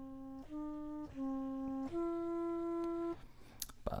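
A looped flute sample played as a keyboard instrument in a software sampler: four low notes in turn, the last held about a second longer than the others before it stops. Played this far down, the flute sample starts to sound stretched out.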